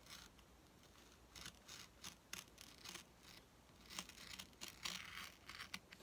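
X-Acto craft knife blade cutting through thick cardboard, faint irregular scratchy strokes that come thicker and faster in the second half.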